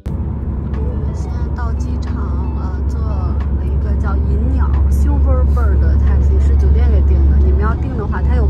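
Steady low road and engine rumble inside a moving taxi's cabin at motorway speed.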